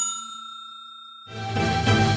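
Bell-like chime sound effect of a subscribe-button animation ringing out and fading, then about a second and a half in a short music sting swells up.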